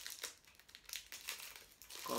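Faint crinkling of the wrapper on a pair of disposable convenience-store chopsticks as it is torn open and pulled off.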